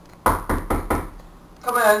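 Knocking on a door: four quick knocks in a row, close together.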